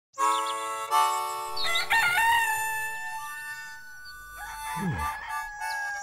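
A cartoon rooster crowing, a drawn-out cock-a-doodle-doo that wavers in pitch, over sustained musical chords. Near the end a falling low sound, then the theme song's singing begins.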